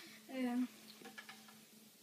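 A brief, quiet voiced sound from a person about half a second in, followed by a few faint clicks.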